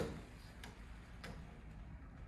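Faint, evenly spaced ticking, about one click every half second or so.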